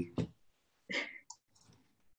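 A few faint, short clicks and a brief breathy noise about a second in, after the tail of a spoken word; the sound then cuts out to dead silence.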